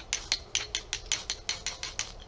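A knife scraped quickly down a ferro rod (fire steel) to throw sparks: about a dozen short, sharp strokes at roughly six a second.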